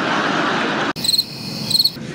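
Crowd laughter in a large room, cut off abruptly about a second in and followed by crickets chirping in two short pulsed trains. The crickets are a stock sound effect marking a joke that fell flat.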